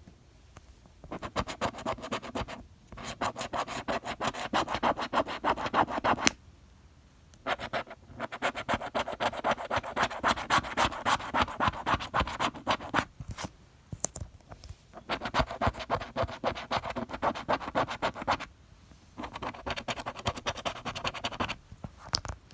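A plastic scratcher tool scraping the latex coating off a paper scratch-off lottery ticket in quick back-and-forth strokes, close to the microphone. It comes in four runs of rapid strokes, each lasting a few seconds, with short pauses between them.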